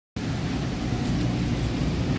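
Steady low rumble of city road traffic.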